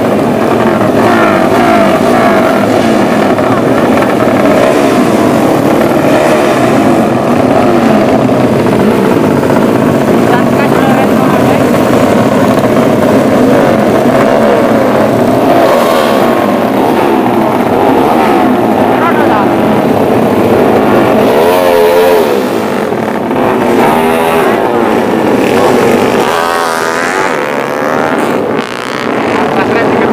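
Several motorcycle engines running and revving at once in a dense, overlapping din. Toward the end, single engines blip up and down in quick waves.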